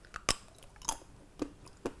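A man biting and chewing a thin milk chocolate with sea salt and caramel: a few short, faint mouth clicks spread over two seconds.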